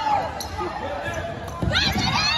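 Basketball game on a hardwood gym floor: a basketball bouncing and sneakers squeaking, with shouts from players and spectators, loudest near the end.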